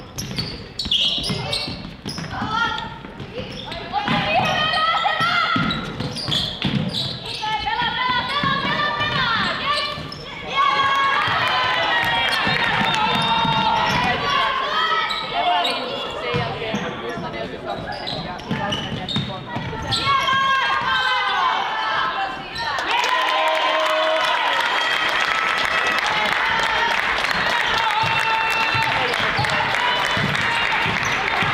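Basketball being dribbled and bounced on a wooden gym floor during play, with players' voices calling out over it.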